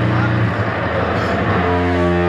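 Bass guitar and drums playing hardcore punk loudly, as a song starts; a held bass note with a clear pitch comes in near the end.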